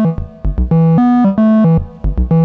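Eurorack modular synthesizer playing a short sequenced melody from a Frap Tools USTA sequencer: a handful of bright, buzzy pitched notes, each a few tenths of a second long, with short gaps between them.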